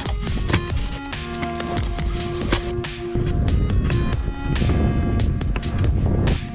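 Background music with a steady beat and sustained held notes.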